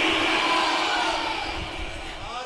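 The echo of a man's amplified sung voice fading away through a public-address system, leaving a steady hiss with faint voices in the background.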